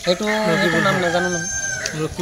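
A rooster crowing: one long crow.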